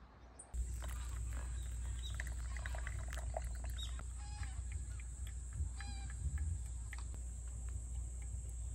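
Outdoor evening ambience: a steady high-pitched insect drone and scattered bird chirps over a low rumble, starting abruptly about half a second in. Two short harsh bird calls come about four and six seconds in.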